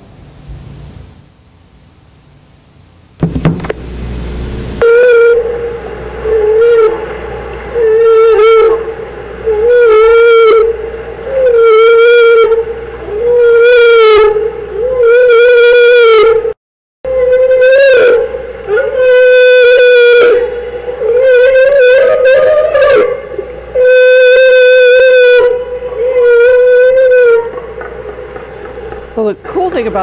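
Recorded humpback whale bubble-net feeding call played back loud: after a burst of noise about three seconds in, about a dozen long calls, each held near one pitch for about a second and repeating about every two seconds. It is the call humpbacks make while one whale blows a ring of bubbles around herring; the group lunges when the call ends.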